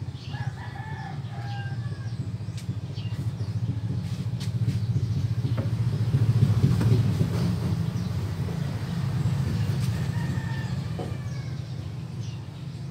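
A rooster crowing, once shortly after the start and again near the end, over a low steady rumble that swells to its loudest in the middle and then eases.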